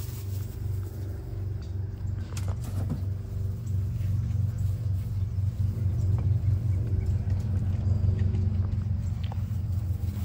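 A low, steady engine hum that grows louder from about four seconds in, with a few faint ticks or rustles a little over two seconds in.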